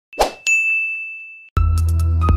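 A quick swoosh, then a single bright ding that rings and fades for about a second. About a second and a half in, electronic music with a heavy bass and a steady beat starts.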